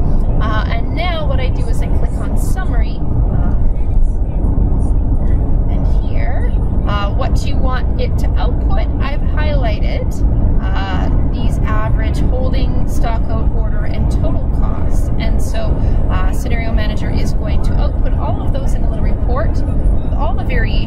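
Indistinct voices over a loud, steady low rumble.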